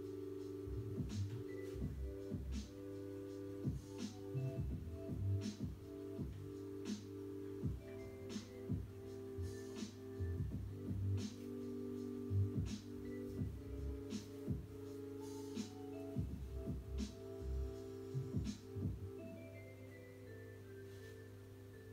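Background music: a calm electronic track with sustained synth chords over a low bass, a soft beat about every second and a half, and occasional higher melody notes.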